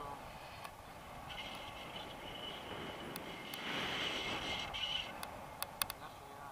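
Wind rushing over the camera microphone in flight under a tandem paraglider. Through the middle a high steady whistling tone rises and grows louder, then stops, and a few sharp clicks follow near the end.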